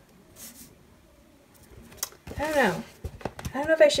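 Faint rustle of paper stickers and planner pages being handled, with a sharp tap about two seconds in and a few small clicks near the end. A short voiced 'mm' follows the tap.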